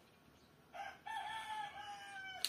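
A rooster crowing once, starting a little under a second in: one long, drawn-out call.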